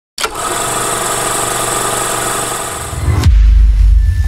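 Intro sound effect of the channel's logo reveal: a steady droning sound with many held tones for about three seconds, then a loud, deep bass rumble that takes over near the end.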